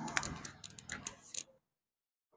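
A quick, irregular run of light clicks and ticks over about a second and a half, then quiet.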